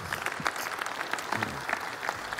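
Audience applauding, many hands clapping in a dense, even patter.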